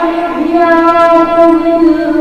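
A high voice holding one long, steady sung note with a slight waver, in the melodic style of Islamic devotional chanting.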